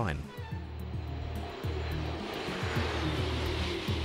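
Rushing noise of a Eurostar high-speed train running at about 300 km/h, swelling about a second and a half in, over background music with steady low bass notes.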